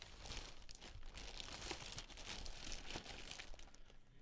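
Paper wrapping and a clear plastic bag crinkling and rustling as they are pulled off a boxed basketball, a continuous crackly rustle.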